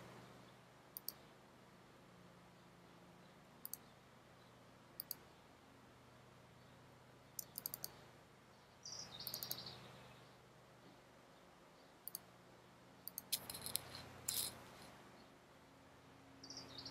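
Faint, sparse computer-mouse clicks, single and in quick pairs, scattered through a near-quiet stretch, with two soft rushes of noise, one in the middle and one near the end.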